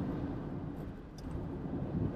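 Cabin noise of a JAC T80 SUV at highway speed: a steady low rumble of tyres, road and its 2.0 turbo four-cylinder engine.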